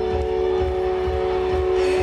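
Live concert music: a held keyboard chord sustained over a steady, pulsing low bass beat, loud in an arena.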